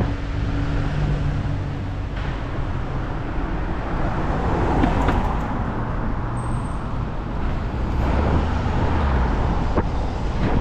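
Urban road traffic. A car engine idles close by for about the first two seconds, then there is a steady mix of car engines and tyre noise.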